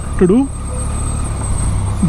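Triumph Tiger 800 motorcycle's three-cylinder engine running steadily at low speed, a continuous low hum, as the bike rolls slowly in traffic.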